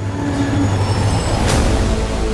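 Train running on rails: a steady, loud rumble with a sharp knock about one and a half seconds in.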